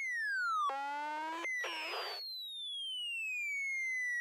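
Quiet electronic synthesizer tones: a pure tone glides steadily downward in pitch, broken about a second in by two short buzzy synth chords, then a single tone sinks slowly for the rest of the time.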